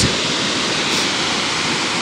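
Rainbow Falls, a waterfall on the Middle Fork of the San Joaquin River, giving a steady rushing of falling water.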